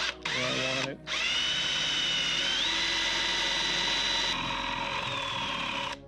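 Electric drill with a long 3/8-inch bit boring a wiring channel through a solid guitar body. A short burst stops about a second in. Then a run of about five seconds follows, its whine climbing as the motor spins up, holding steady, and sagging slightly near the end.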